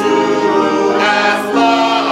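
A church congregation and choir singing a hymn together, many voices holding long notes that change about once a second.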